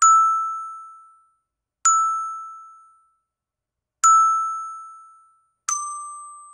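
Eight-bar children's metal-bar xylophone (metallophone) struck with a ball-headed mallet, one note at a time at a slow pace. The same bar rings three times, about two seconds apart, and a bar a step lower sounds near the end. Each note is a clear bell-like ping that dies away within about a second.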